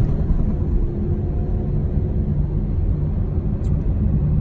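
Steady low rumble of a car running, heard from inside its cabin, with a faint short click near the end.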